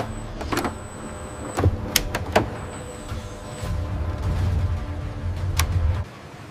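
Industrial robot arms' electric motors whirring, with a thin high whine that comes and goes and several sharp clicks, mostly in the first half. A low hum swells over the last two seconds.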